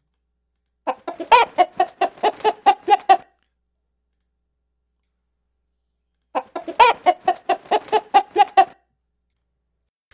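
Recording of a hen clucking, pitched down about six semitones with a pitch-shift effect. It plays twice: a quick run of about a dozen short clucks about a second in, and the same run again a few seconds later, with dead silence between.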